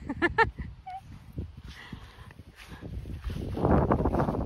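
Footsteps and rustling through short grass, growing louder near the end, after a few short vocal sounds near the start.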